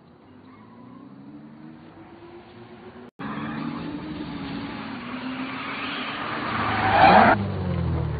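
A car driving up at speed, its engine note rising, then braking to a stop with a short tyre squeal about seven seconds in, the loudest moment, before settling into a low idle.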